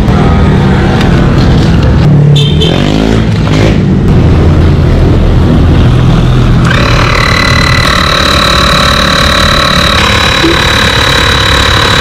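A portable 12-volt tyre inflator switches on about two-thirds of the way in and runs with a steady high whine, pumping up a punctured motorcycle inner tube to find the leak. Under it a vehicle engine runs with a low rumble throughout.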